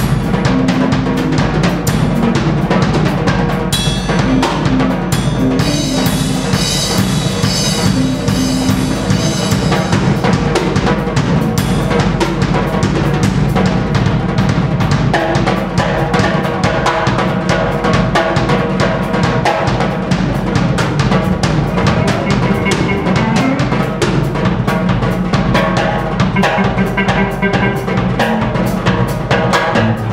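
A Tama drum kit played hard and busily, with kick, snare and cymbal hits coming thick and fast, over pitched instruments from the band underneath.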